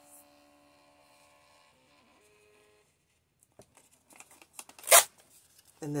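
Mini thermal printer's motor whining faintly with a few steady tones as it feeds out the printed note, stopping about two to three seconds in. Then paper rustling and one short, loud tear about five seconds in as the printout is torn off at the printer's slot.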